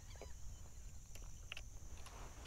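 Quiet outdoor ambience: a faint steady high-pitched hiss over a low rumble, with a few soft clicks.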